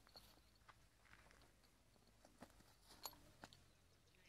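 Near silence, with a few faint, scattered clicks and rustles.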